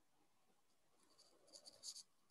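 Near silence with a run of faint, light clicks in the second half, quickening near the end.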